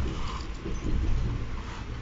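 Inside a moving Amtrak passenger car: a steady low rumble from the wheels on the rails, with small creaks and rattles from the car's fittings.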